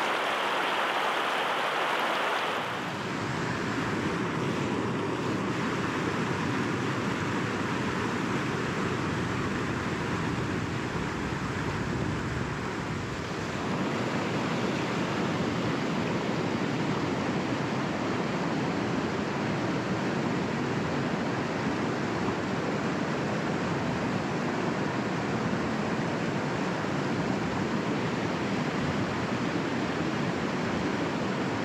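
Whitewater rapids of a rocky river rushing over boulders and small cascades in a steady, even wash of noise. About three seconds in, the sound becomes lower and fuller.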